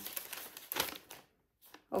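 Paper rustling and crinkling as a folded paper drawing is handled and unfolded, for about the first second before it dies away.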